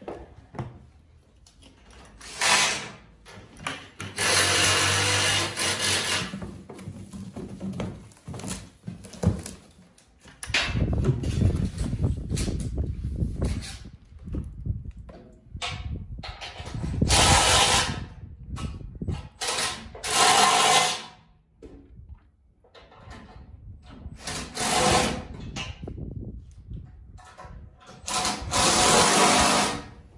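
Hydraulic fluid poured from a 5-gallon plastic pail into a plastic reservoir jug, gushing and splashing in repeated surges of a second or two with quieter gaps between.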